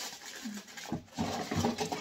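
Rustling, scratching and light knocks of decorations and packaging being handled and picked up.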